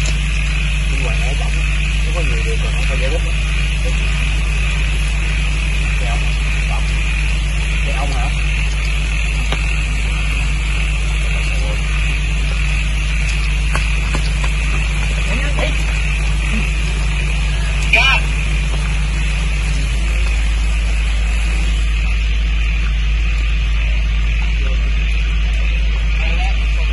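Heavy rain pouring steadily, with a steady low machine hum running under it; part of the hum drops out about twenty seconds in. A short louder sound stands out about eighteen seconds in.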